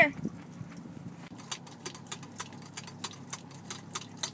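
Shih Tzu licking and drinking from the nozzle of a travel water bottle: light, irregular clicks and licks that come faster toward the end, over a low steady hum.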